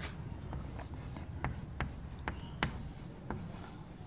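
Chalk writing on a blackboard: a series of short, light taps and scratches as characters are written.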